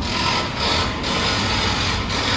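Street traffic rumble with a loud rasping hiss on top that comes in three surges, two short ones and then a longer one.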